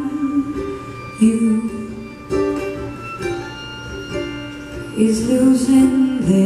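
Live acoustic string band playing a slow song: fiddle, mandolin, acoustic guitar, ukulele and upright bass, carrying a melody of long held notes that swell louder near the end.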